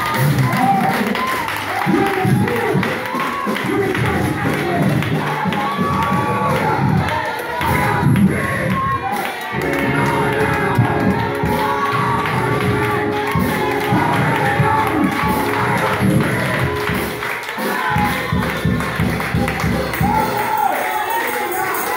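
Live church worship music with many voices singing and calling out together over it, continuous and loud.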